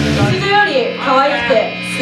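A band's loud held chord with drums stops just after the start. A woman's voice through the PA follows over a steady low tone from the guitar amplifiers.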